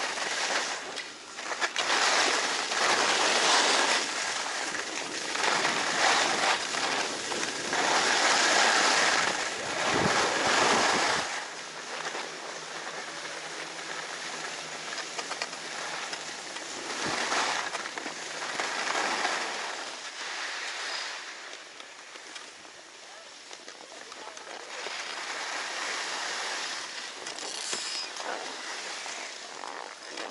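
Skis sliding and scraping over groomed snow during a downhill run: a loud rushing noise that swells and fades for about the first ten seconds, then drops to a quieter, steadier hiss.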